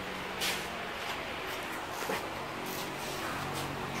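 Steady hiss and low hum of a running fan, with a few faint knocks and rustles of handling.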